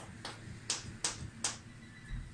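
Chalk tapping and scratching on a blackboard while writing, a few sharp taps about every half second.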